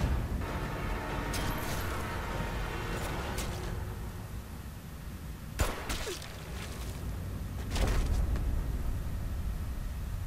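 TV drama soundtrack playing: a low rumbling score, with one sharp bang a little past halfway, a gunshot, and a heavier low surge shortly after.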